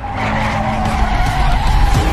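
Car tyres squealing in a skid: one long held squeal that sags slightly in pitch.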